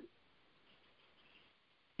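Near silence: a pause between sentences of speech, with only faint background hiss.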